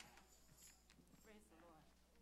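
Near silence: quiet room tone with a faint voice murmuring off-microphone about a second in.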